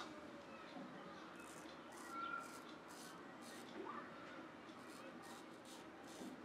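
Focus shavette razor with a half Rapira blade scraping through lathered beard stubble in short, faint strokes, about ten over six seconds.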